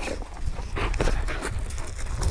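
Two large dogs scuffling and stepping about on gravel around a person, a few faint scrapes and knocks, over a low steady rumble.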